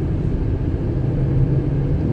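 Steady low rumble of a vehicle's engine and tyres on the road, heard from inside the cabin while driving, with a faint steady engine hum.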